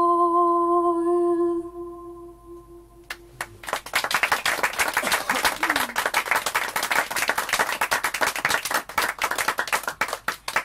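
A woman's unaccompanied singing voice holds a long, steady final note that fades out over about three seconds. A small audience then bursts into applause from about four seconds in, continuing to the end.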